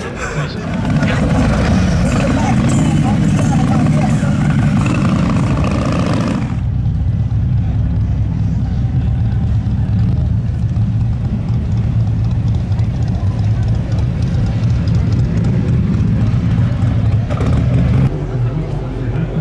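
Background voices and outdoor bustle for the first six or so seconds, then a sudden change to a steady low rumble: a 1940s Cadillac convertible's V8 engine running as the car rolls slowly past and away.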